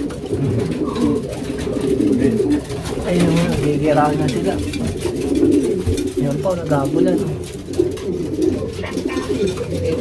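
Domestic pigeons cooing, several birds overlapping in a steady low chorus: the courtship cooing of newly paired breeding pairs.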